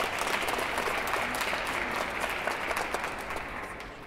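Audience applauding, a dense steady clapping that tapers off toward the end.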